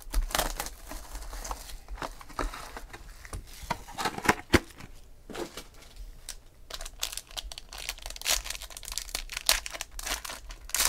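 Cardboard of a small trading-card box being handled and opened, then the crinkling and tearing of a foil card pack, the crackle denser and louder in the last few seconds.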